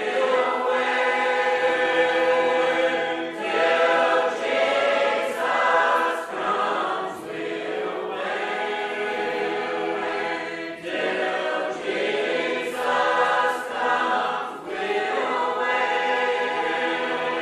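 Primitive Baptist congregation singing a hymn a cappella, many unaccompanied voices together on slow sustained notes, from an old cassette tape recording.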